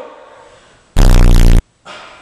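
A loud, low buzzing sound effect is edited into the audio, starting about a second in and lasting about two-thirds of a second. It is clipped at full level.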